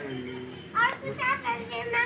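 Young children's high-pitched voices chattering and calling out, with several short, excited exclamations in the second half.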